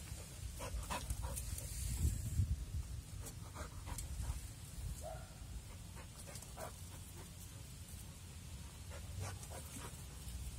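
A Border Collie running close by, panting, with scattered scuffs and taps of her paws on dirt and concrete. A couple of brief faint squeaks come near the middle.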